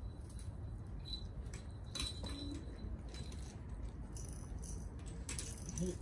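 Puppies scampering and playing on a wooden deck: scattered light clicks and a rattle near the end, over a steady low outdoor rumble.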